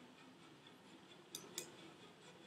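Two quick computer mouse clicks about a quarter second apart, a little past halfway through, over faint room tone.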